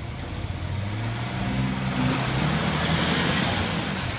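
Jeep engine revving hard under load while pulling on a tow strap to free a stuck Jeep from mud, its pitch and loudness climbing over the first two seconds and then held, with a rush of tyre spin in the mud; the stuck Jeep does not come free.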